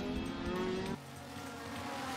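Racing car engines running at speed, a steady drone that changes abruptly about a second in to a quieter, lower-pitched engine note.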